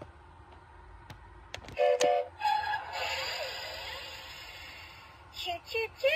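A talking Thomas & Friends toy engine's small speaker plays a short electronic whistle toot about two seconds in, then a few seconds of hissing sound effect that fades away. A few light clicks of the boxes being handled come before it, and a voice starts near the end.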